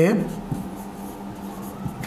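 Marker pen writing on a whiteboard, a faint scratching over a steady low hum.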